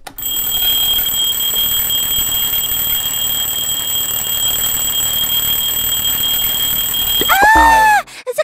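An alarm clock ringing, a loud, steady, shrill ring that runs for about seven seconds and cuts off near the end, when a child's voice rises and falls.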